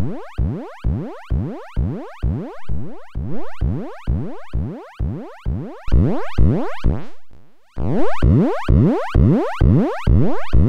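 Serge modular synthesizer playing a repeating short note, about two a second. Each note sweeps upward in pitch and fades. The oscillator is being waveshaped through the Serge Extended ADSR. The notes thin out and almost stop a little after seven seconds, then come back.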